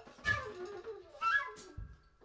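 Free-improvised live music: a flute's soft sliding line with two sudden accented attacks about a second apart, each a low thud with a short, wavering pitched cry on top.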